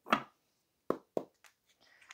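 Two quick knocks of a tarot card deck against a wooden tabletop, about a second in and a quarter second apart, followed by a few faint card clicks.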